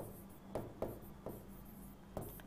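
Stylus writing by hand on an interactive display screen: a few faint taps and scratches as the pen strokes a word.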